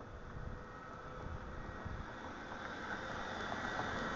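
Wind buffeting the camera's microphone in an uneven low rumble, under a steady background noise that slowly grows louder.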